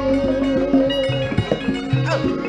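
A young sinden's held sung note with vibrato, ending about a second in, over Javanese gamelan accompaniment with steady pitched notes and sharp percussive strokes.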